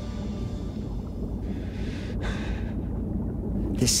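Low, steady rumbling drone of a film soundtrack's ambience, with a short breath about two seconds in.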